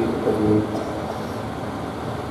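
A steady whooshing background noise, the evaporative air cooler's fan running, with a man's voice trailing off in the first half-second.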